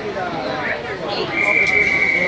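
A loud, steady high-pitched signal tone starts a little over a second in and holds without a break, over the chatter of a crowd in an echoing indoor pool hall.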